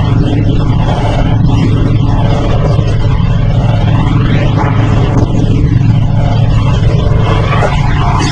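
Cruiser motorcycle engine running steadily at road speed, a loud continuous rumble.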